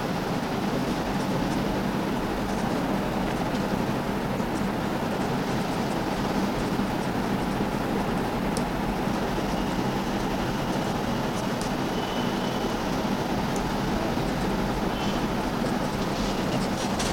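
Steady background hum and hiss, with faint ticks and short squeaks of a marker pen writing on a whiteboard.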